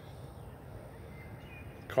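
Quiet outdoor ambience: a faint steady hiss, with a couple of faint high chirps a little after a second in.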